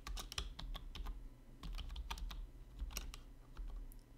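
Typing on a computer keyboard: several runs of quick keystrokes with short pauses between them.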